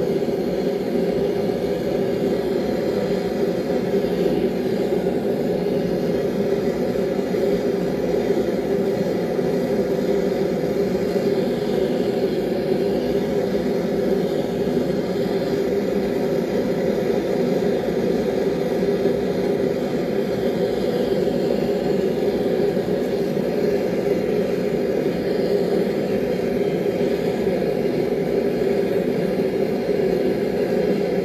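Forge running loud and steady, a constant rushing noise with no change, while a steel knife blade heats toward hardening temperature ahead of its quench.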